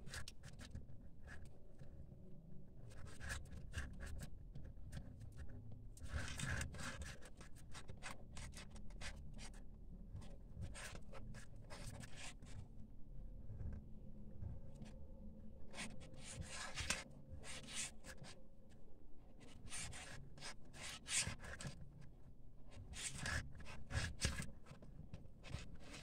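Paper yarn rustling and scratching against a crochet hook as single crochet stitches are worked, in uneven bursts of crisp rustling every second or few.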